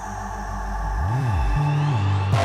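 Drum and bass track with a sustained synth pad over a deep sub bass. About a second in, a bass note swoops up and back down, then settles on a held note.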